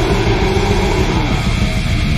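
Black/death metal recording: a wall of heavily distorted electric guitars over fast, dense drumming, with a held, wavering note that drops out a little past halfway.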